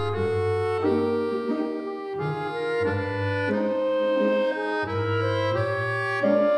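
Instrumental background music: a slow melody of held notes, each lasting about a second, over intermittent low bass notes.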